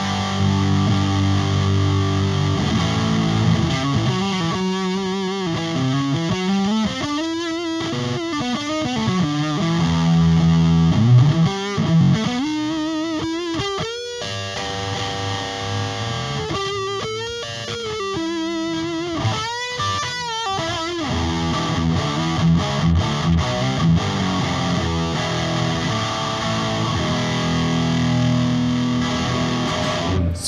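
Hamer Standard electric guitar with hot-wound Alnico V humbuckers, played with distortion through a Randall amplifier stack. It starts with held chords, moves to single-note lead phrases with bends and vibrato, and returns to chord riffs near the end.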